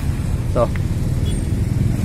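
Steady low background rumble, with one short spoken word about half a second in.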